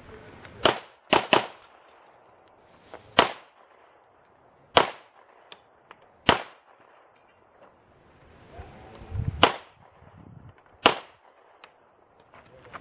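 Pistol shots fired one at a time at irregular intervals, about eight in all, with two in quick succession about a second in.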